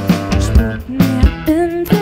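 Live pop-rock band playing: a steady drum beat with electric guitar and bass, and a woman singing into a microphone.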